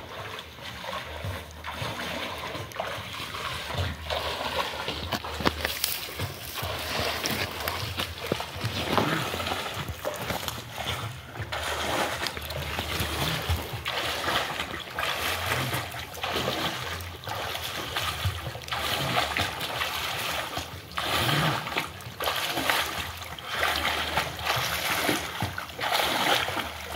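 Open-water swimming: the splash of a swimmer's arm strokes in a lake, repeating every second or so and a little louder in the second half.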